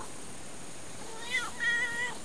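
Tortoiseshell cat giving a short, high meow a little past a second in, part of its affectionate "an, an" calls while being stroked.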